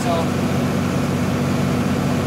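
John Deere 4630 tractor's turbocharged six-cylinder diesel running at a steady, even drone, heard from inside the cab while it pulls a stalk chopper through corn stubble.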